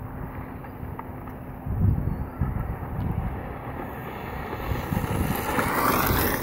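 Wind buffeting the microphone, then an electric 1/8-scale Ofna LX buggy with a brushless motor on a four-cell LiPo closing in and passing close near the end, a rising hiss of its tyres on gravel.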